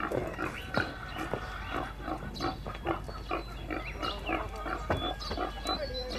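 A pen of pigs grunting, many short overlapping calls several a second.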